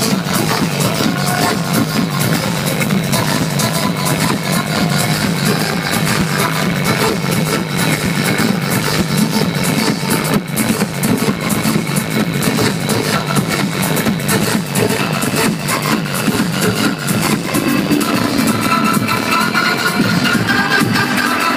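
Loud live electronic dance music from a DJ set, played over a concert sound system and recorded from within the crowd.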